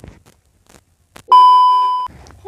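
Television colour-bar test-tone sound effect: a loud, steady, single-pitched beep that starts suddenly a little past halfway, after near silence.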